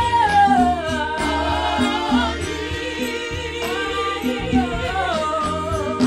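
Gospel worship music: singing voices holding and gliding through long notes over a repeating low instrumental note.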